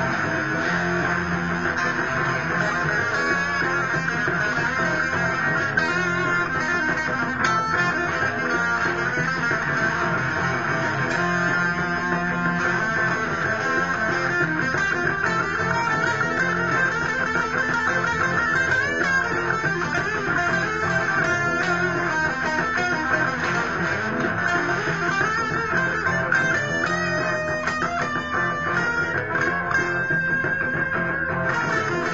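Fender Stratocaster electric guitar played without a break in an instrumental jam: a dense, steady run of notes.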